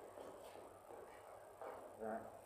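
Near silence: quiet room tone with faint, low voices.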